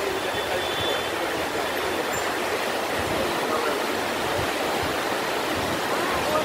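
Rapti River water rushing over stones and shallow rapids below the bridge, a steady rushing noise.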